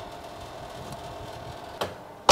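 Electric oven running with a steady mechanical hum, and a short click near the end.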